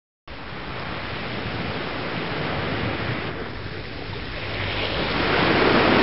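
Ocean surf washing onto a beach, a steady rush of water that starts suddenly and swells louder near the end as a wave comes in.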